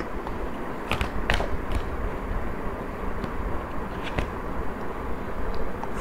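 Tarot cards being handled as a card is drawn from the deck and laid down on a blanket: a few faint clicks and card rustles, two about a second in and two more about four seconds in, over steady background hum.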